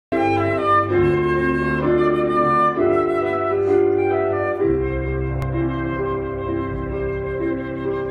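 Silver transverse flute playing a slow melody over sustained electronic keyboard chords, the bass note changing about every two seconds, as an instrumental opening before the singers come in.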